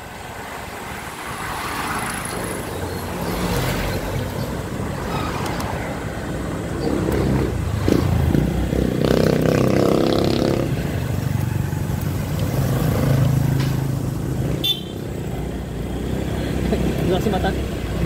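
Motor scooter's engine running at low road speed, with road and wind noise from the ride.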